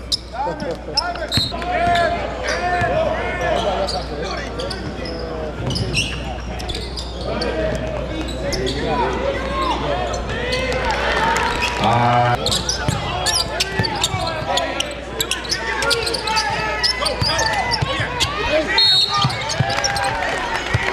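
Basketball bouncing on a hardwood gym floor during a game, amid the voices of players and spectators in a large hall. A short, loud tone sounds about twelve seconds in.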